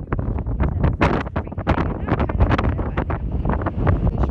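Strong wind buffeting a phone's microphone: loud, gusty noise that surges and drops many times a second.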